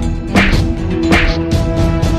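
Whip cracks used as fight sound effects: two sharp cracks, about half a second and just over a second in, over dramatic background music.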